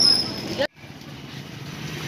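A small motorcycle engine running as the bike rides past, with a brief thin high whine, cut off abruptly well under a second in. Afterwards only a faint steady low hum remains.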